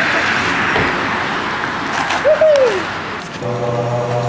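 Small skateboard wheels rolling over asphalt: a steady rough rumble with a few light clacks, and a short rising-then-falling whoop from a voice about two seconds in. Near the end a low, steady droning music begins.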